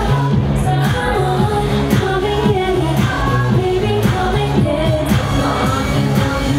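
Pop song with a woman singing over a steady dance beat and a repeating bass line.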